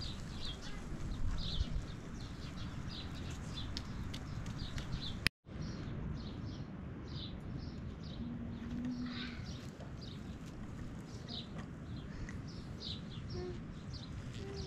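Small birds chirping repeatedly in short high calls, about two a second, over a steady low background rumble; the sound cuts out briefly about five seconds in.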